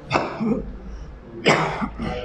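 A man coughs twice, about a second and a half apart.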